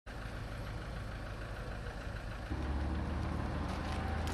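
Truck engine idling steadily, with a deep low hum that grows louder about two and a half seconds in.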